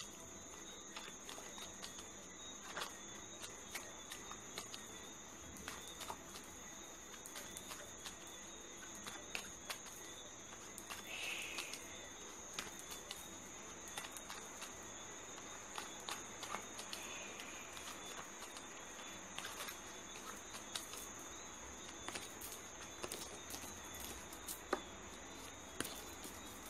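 A deck of playing cards being shuffled by hand: faint, irregular soft clicks and taps over a steady hiss with a thin high-pitched whine.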